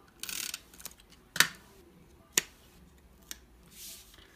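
Stampin' Up SNAIL tape runner rolling adhesive onto the back of a small cardstock piece: a short rasping run a quarter second in, then three sharp clicks spread over the next few seconds and a soft rustle near the end.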